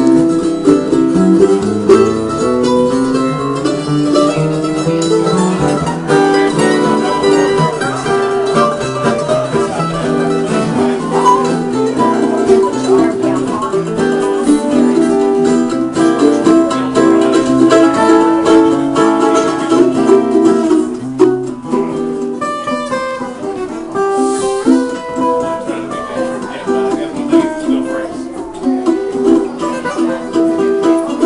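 Steel-string acoustic guitar playing a lively bluegrass-style instrumental, picked notes running on without a break.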